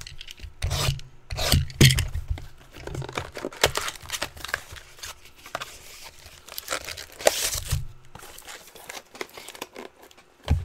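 Plastic wrapping being torn and crinkled off a cardboard trading-card box, with the box rubbing and knocking as it is handled. The tearing is loudest about seven seconds in.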